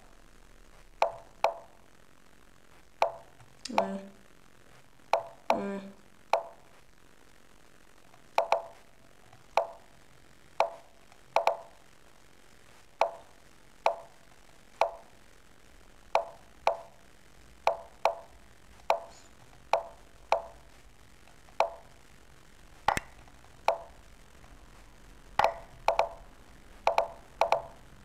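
Lichess move sounds during a fast bullet game: short wooden plops of pieces landing, coming in quick succession about one to two a second as both players move.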